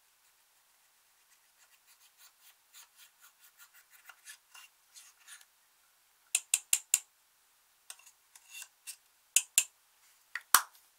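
Small metal scissor tips scraping pressed powder eyeshadow out of a plastic compact, a run of soft scratchy strokes that grow louder. Then the compact is knocked against the glass dish to shake the crumbled powder out: four quick sharp taps about six seconds in, a few softer ones, and two more loud taps near the end.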